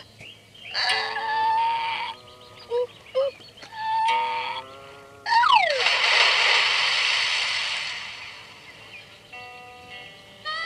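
Effects-distorted children's video soundtrack: pitched musical tones and short vocal-like blips. About five seconds in comes a quick falling swoop, then a loud rush of noise that fades away over about three seconds, and a few steady held tones near the end.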